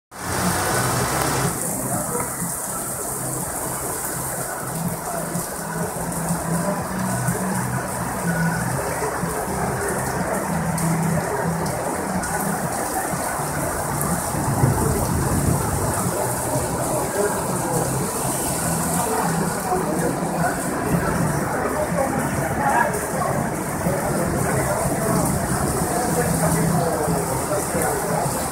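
Heavy rain pouring down in a sudden downpour, a steady dense hiss of rain on the pavement.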